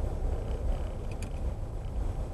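Steady low rumble of a car's engine and tyres heard from inside the cabin as it drives slowly, with a few faint ticks about a second in.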